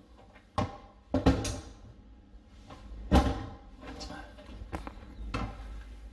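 Plastic toilet seat and lid being lifted and falling back, knocking and clunking against the pan several times, the loudest knock about three seconds in. The seat won't stay up because its hinges are still a bit tight.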